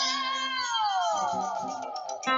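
A man's high-pitched vocal wail, held and then sliding steadily downward over about a second and a half, with an acoustic guitar ringing underneath.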